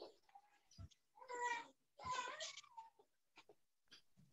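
Two short, high-pitched animal calls about a second apart, with a few faint clicks around them.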